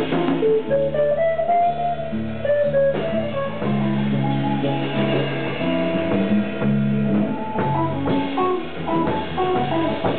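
Live fusion jazz band: an electric guitar plays a single-note melodic line over electric bass and a drum kit.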